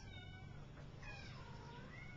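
A domestic cat meowing faintly: a short call at the start, then a longer meow about a second in that falls and rises in pitch.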